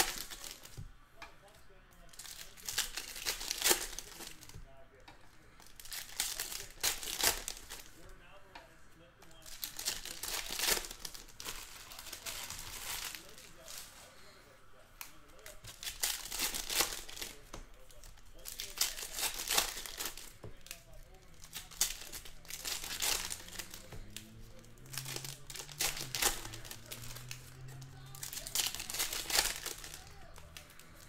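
Foil trading-card pack wrappers being torn open and crinkled by hand, in spells of crinkling about every three seconds.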